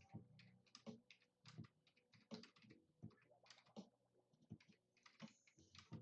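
Faint, irregular clicks and soft taps, about two a second, in a quiet room.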